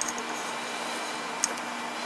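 Steady low room hum and hiss with two light clicks, one at the start and one about a second and a half in, from handling a multimeter and its test probes.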